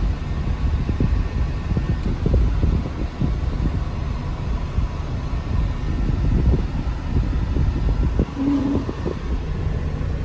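Cummins ISX heavy-duty diesel idling, heard from inside the truck's cab as a steady low rumble. The rumble is uneven, rising and falling with no set rhythm.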